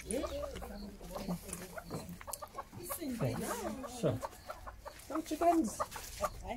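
Chickens clucking in short calls.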